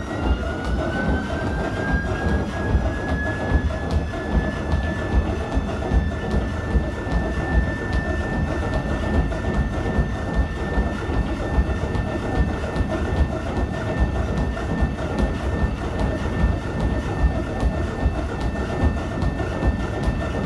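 Motorised laboratory treadmill running with a high motor whine that rises in pitch over the first few seconds as the belt speeds up, then holds steady. Running footsteps land on the belt in a regular beat.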